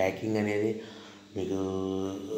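A man's voice speaking in two long, drawn-out syllables held at a nearly even pitch, with a short gap between them.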